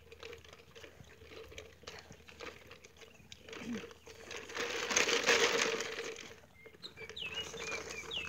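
Soft rustling and handling noise from a handheld phone on a walk, swelling into a louder rush of wind-like noise for a second or two about five seconds in. A few short, high bird chirps come near the end.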